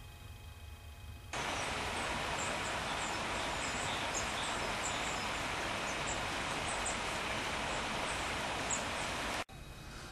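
Outdoor waterside ambience: a steady, even hiss with faint, scattered high bird chirps, cutting in suddenly about a second in and cutting off just before the end.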